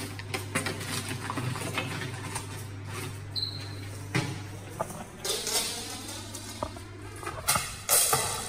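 Hurried rummaging through a pile of craft supplies: plastic items, straws and packets rustling, clattering and scraping in a steady run of small irregular clicks, over a steady low hum.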